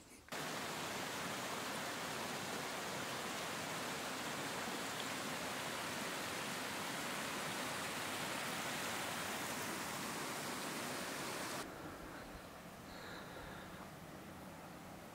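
Small mountain creek running over rocks: a steady, full hiss of water that starts abruptly just after the beginning and cuts off about three-quarters of the way through, leaving a quieter steady hiss.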